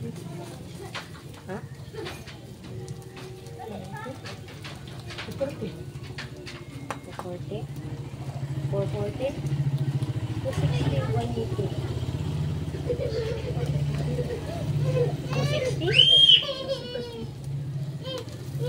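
Background chatter of people and children's voices, with a loud high-pitched child's shout about two-thirds of the way through from about 16 s in, over a steady low hum. Light clicks come in the first half.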